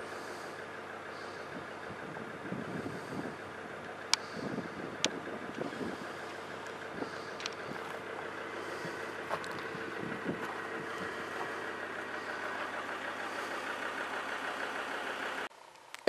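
A vehicle's engine idling steadily, with a couple of sharp clicks about four and five seconds in; the hum stops suddenly near the end.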